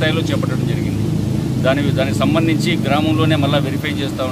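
A man speaking into press microphones, over a steady low rumble like an engine running.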